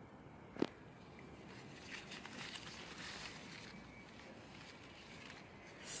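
Faint outdoor background with light rustling and one sharp click a little over half a second in.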